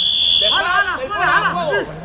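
Referee's whistle, one long steady blast that stops about half a second in, halting play at a ruck.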